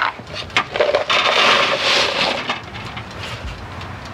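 Powder-coated 9 mm cast bullets poured from a plastic shaker container onto a wire mesh tray. A dense rattling clatter starts about a second in and lasts about a second and a half, then tails off into scattered light clicks as the bullets settle.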